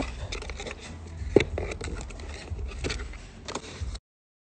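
Pink cardboard gift box being opened by hand: card flaps and a paper insert rustling and scraping, with one sharp tap about a second and a half in.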